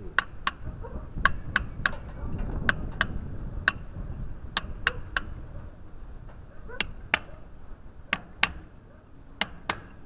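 Hammer striking a steel chisel to chip old concrete: sharp, ringing metal-on-metal blows, about sixteen at an uneven pace in clusters of two or three, with a pause of nearly two seconds about halfway through.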